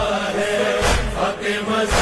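Noha recitation: voices chanting a Muharram lament over a heavy beat that falls about once a second.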